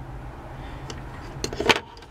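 A steady low hum under faint background noise, with a few sharp clicks and a knock in the second half as a small circuit board with its wire leads is handled and turned over on a wooden table.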